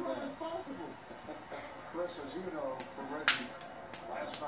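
A toddler's hand claps, a few sharp ones in the second half, the loudest about three seconds in. A TV basketball commentator's voice runs faintly underneath.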